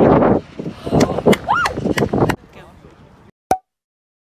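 Voices of a few people without clear words, with several sharp knocks and a brief rising-and-falling whoop in the middle. The sound stops abruptly, and a single short click follows near the end.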